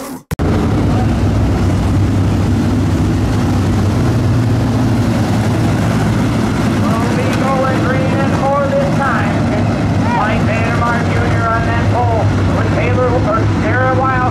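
A pack of dirt late model race cars running at speed, their V8 engines making a loud, steady drone that starts suddenly just after the beginning.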